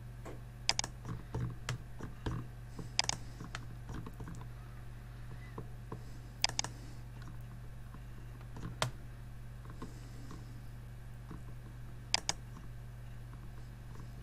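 Scattered sharp clicks from a computer mouse and keyboard, a few in quick pairs, over a steady low hum.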